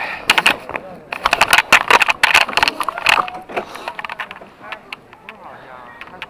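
Toboggan sled rattling and knocking on its metal coaster track, a dense run of sharp clacks for the first few seconds, then quieter, with faint voices near the end.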